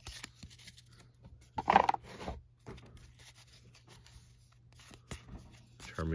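Trading cards being handled and sorted by hand: soft slides and small clicks of card stock as cards are moved from one stack to the other, with one louder scrape about two seconds in.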